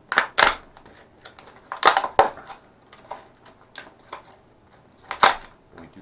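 Stiff clear plastic clamshell packaging crinkling as it is handled and pried open, in three short bursts: near the start, about two seconds in with a sharp click, and about five seconds in.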